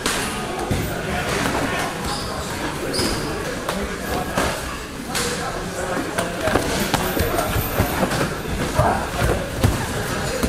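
Gloved punches and kicks landing in kickboxing sparring: repeated sharp thuds and slaps, coming thicker and louder in the second half, over the indistinct talk and noise of a busy training gym.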